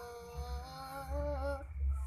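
A girl's voice holding the long drawn-out last note of a sholawat, an Islamic devotional song, wordless like a hum. The note is steady at first, wavers up and down after about a second, and breaks off shortly before the end.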